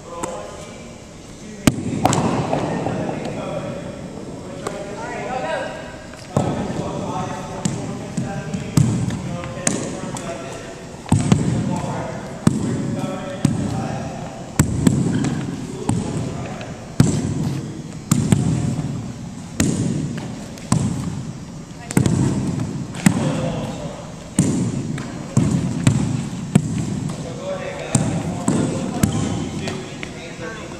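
Softballs thrown as short hops, bouncing on a hardwood gym floor and smacking into leather gloves: sharp impacts roughly once a second at irregular intervals, echoing in the gym, over the chatter of many voices.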